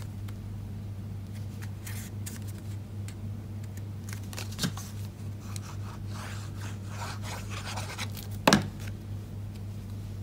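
Cardstock and patterned paper being handled, slid and rubbed, with light rustles and scrapes, and one sharp tap about eight and a half seconds in, the loudest sound. A steady low hum runs underneath.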